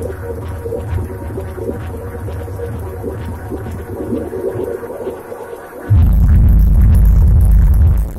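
Live electronic dance music played on drum machines and pad controllers: a throbbing track with a busy mid-range synth line. Its bass thins out, then about six seconds in a heavy, much louder bass comes in.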